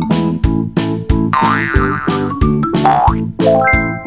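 Upbeat children's background music with a steady beat. A sliding, wavering cartoon sound effect comes in about a second and a half in, and again briefly near three seconds. A quick rising run of notes follows near the end.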